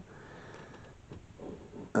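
Quiet pause: faint room hiss with a few soft rustles and small handling sounds in the second half.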